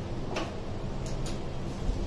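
Steady room noise with a few faint, irregular clicks and a soft low thump near the end.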